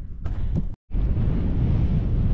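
Wind buffeting the microphone: a steady low rumble, cut off to silence for a moment just under a second in, then resuming.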